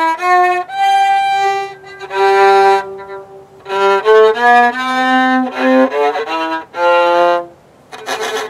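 Viola bowed by a beginner, playing slow single notes in first position that step up and down in pitch, each held for about half a second to a second, in short phrases with brief gaps between them.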